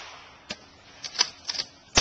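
Shotgun between shots: a series of sharp mechanical clicks and clacks as the action is worked, then another loud shot right at the end.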